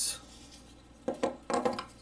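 A few sharp clicks and knocks of small folding pocket knives being handled and set on a wooden table, in two short clusters about a second in and half a second later.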